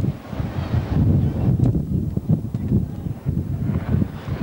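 Strong wind buffeting the camcorder microphone: an uneven low rumble that rises and falls in gusts.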